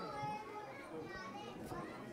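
Several people talking at once, children's voices among them: the chatter of a crowd of onlookers.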